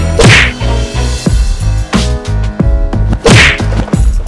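Background music with a steady bass beat, cut through twice, about three seconds apart, by a loud whooshing whack.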